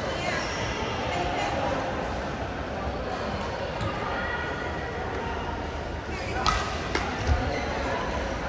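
Badminton play in a large hall: racket hits on the shuttlecock and players' footsteps on the court, over background voices from around the hall. Three sharp hits come close together about six and a half seconds in.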